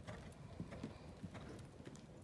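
Faint hoofbeats of a horse cantering on arena sand, coming in a regular stride rhythm.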